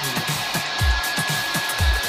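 Hand-held hair dryer blow-drying hair, a steady rush of air with a thin high whine, over background music with a low beat about once a second.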